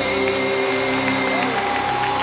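Live band in an arena holding sustained notes, with a tone sliding up and holding near the end, over crowd cheering and applause.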